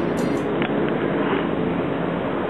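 A cumbia song with drum beats cuts off about half a second in. A steady rushing outdoor background noise follows, like wind on the microphone.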